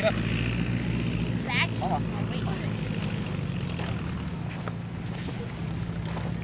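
A steady low engine drone runs throughout, with brief faint voices about one and a half to two seconds in.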